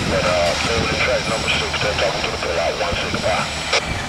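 Freight cars rolling slowly on the rails as the rear of the train moves away, a steady low rumble.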